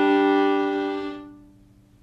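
Violin playing a double stop on the open G and D strings together, a simple G chord for backing a tune, held on one sustained bow stroke that fades out about a second and a half in.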